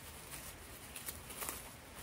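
Thin clear plastic wrap crinkling as a sandwich is unwrapped by hand, a few faint scattered crackles.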